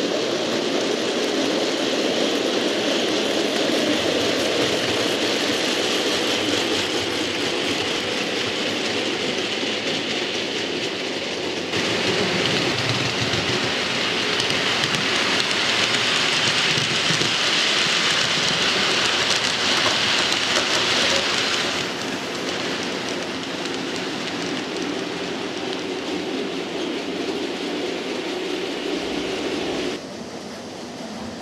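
OO gauge model trains running through a station: a continuous whirring hiss of small wheels on the track and the motors. It grows louder about twelve seconds in and drops back about ten seconds later.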